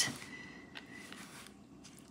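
Diamond painting drill pen placing resin drills on the adhesive canvas: a sharp click at the start, then a few faint light taps.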